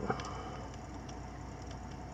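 A faint click as a small screwdriver works at the camera's lens-cover bracket, then quiet, steady room noise with a low hum.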